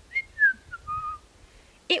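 A woman whistling a short tune of four notes, each lower than the last, all within the first second or so.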